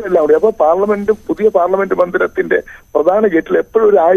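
A man speaking continuously over a telephone line, his voice thin and cut off at the top.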